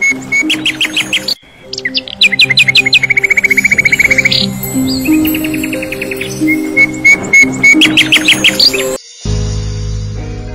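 Birds chirping in quick repeated calls, with one fast trill, laid over soft background music. About nine seconds in, both cut off suddenly and a different piece of music starts.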